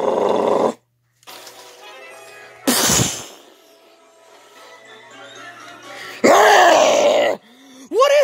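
A monster's growling sound effect that stops under a second in. Faint music plays, broken by a sudden loud burst about three seconds in, and a second loud growl comes near the end.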